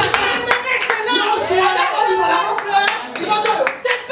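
Scattered, irregular hand claps over loud voices.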